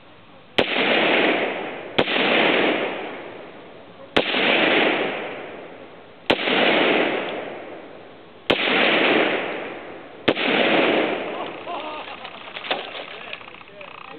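Six gunshots fired at a water jug, a second and a half to two seconds apart. Each is a sharp crack followed by a loud rumbling tail that fades over a second or two.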